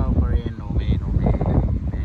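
Wind buffeting the microphone of a moving vehicle, a heavy, gusty low rumble throughout, with a voice speaking briefly in the first half.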